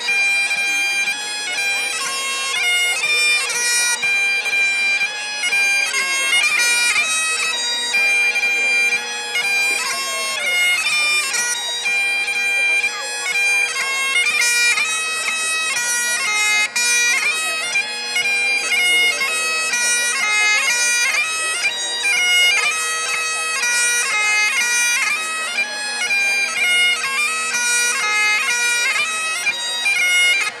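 Great Highland bagpipe playing a Highland Fling tune: steady drones under a quick, ornamented chanter melody.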